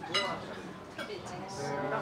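A person's voice held in a long, level hum, with a short sharp clink of tableware just after the start.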